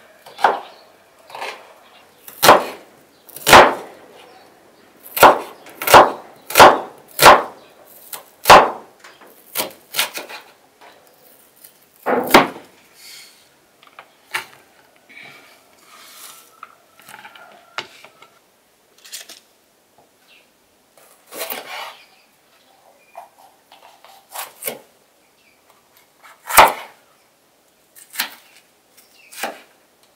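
Kitchen knife striking a wooden cutting board as vegetables are sliced: sharp, irregular knocks, several close together over the first nine seconds, then fewer and mostly softer, with a loud one near the end.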